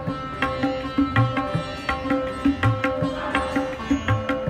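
Background instrumental music: plucked strings over a held drone, with a deep drum stroke about every second and a half.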